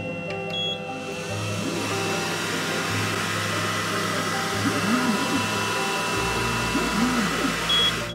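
xTool M1 laser engraver running its framing pass: a short beep as its button is pressed, then a steady fan hiss, with the motors rising and falling in pitch as the laser head traces the outline, and another beep near the end. The sound cuts off suddenly.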